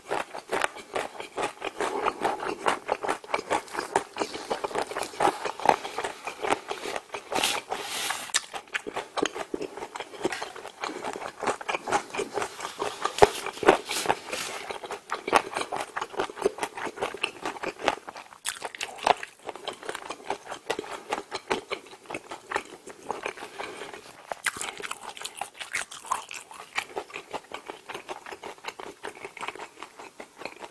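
A person chewing a large mouthful of food close to the microphone: a continuous run of wet smacks and small clicks from the mouth.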